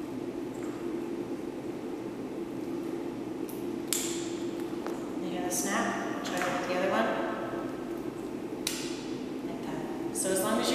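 Plastic hose connectors of a hot water circulating blanket being handled and pushed onto the ports, with a sharp click about four seconds in and another near the end, the click of a fitting seating, over a steady low hum.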